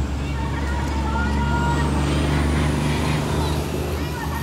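A motor vehicle's engine running nearby as a steady low rumble that swells slightly around the middle, with voices from the crowd over it.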